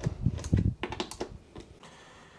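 Hand tool working the bolts of a car's door striker as they are snugged lightly: a quick, irregular run of sharp metal clicks, some with a dull thump, fading out after about a second.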